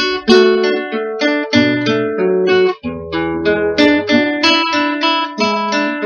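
Solo nylon-string classical guitar, chords and melody notes plucked in a steady rhythm. Just under three seconds in the sound breaks off for a moment, then low bass notes ring under the chords.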